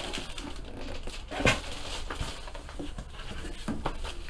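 Plastic bag crinkling and a cardboard box being handled as a bagged jersey is pushed into the box, a string of rustles and light knocks with the loudest about one and a half seconds in.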